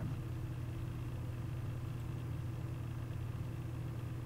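A steady low hum, unchanging throughout, with no speech.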